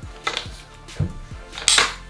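Manfrotto 055 tripod leg being swung back in and locked into place: two sharp clicks, then a louder, brief clatter of the metal leg near the end.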